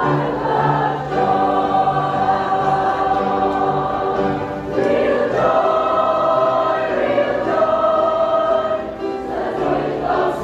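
Mixed church choir singing a gospel song in full chorus, holding long sustained chords that change to a new chord about five seconds in and again near the end.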